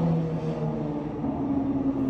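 A steady engine drone from a passing vehicle outside, coming in through an open window, its pitch sliding slowly down. It is loud enough to interrupt the talking.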